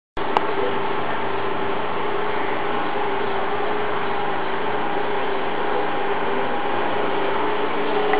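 A steady hum with hiss that holds one even level and a constant low tone throughout, with a single click just after it starts.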